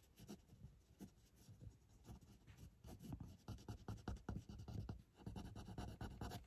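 Fine-tip 0.3 pen nib scratching on paper card, drawing a run of short hatching strokes for texture. The strokes are faint and irregular, and they come faster and closer together in the second half.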